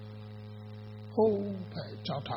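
Steady electrical mains hum in the microphone recording. A little over a second in, a man's voice breaks in, louder than the hum, with one drawn-out syllable and then the start of speech.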